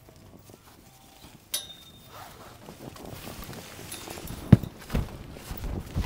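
Elephants moving about at close range: a short sharp click with a brief ring about one and a half seconds in, then rustling that grows louder, with a few dull thumps in the second half.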